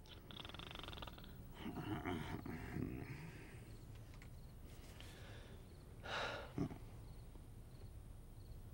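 Soft snoring and breathing from a sleeper under the covers: a wavering snore about two seconds in and a breathy one about six seconds in, followed by a short soft knock.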